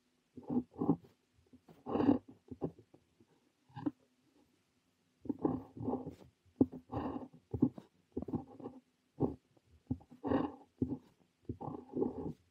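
Parker 45 fountain pen nib scratching on notebook paper while Korean characters are handwritten, in short separate strokes with a brief pause about four seconds in.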